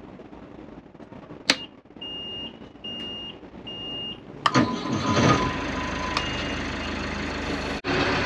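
Sailboat's inboard diesel engine being started from its cockpit control panel: a click, three short beeps from the panel, then the engine cranks and catches about four and a half seconds in and settles into a steady run.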